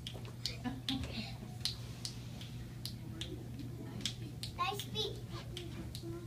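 Light, sharp taps and clicks, roughly two a second and unevenly spaced, from a child tapping along the ribs of a skeleton costume, with quiet children's voices behind.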